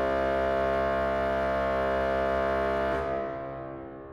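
Historic French Baroque pipe organ (Jean-Baptiste Micot, 1772) holding a full chord. The chord is released about three seconds in, and the church's reverberation dies away after it.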